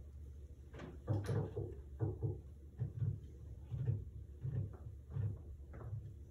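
Irregular soft low thuds and knocks, about two a second, over a low steady hum.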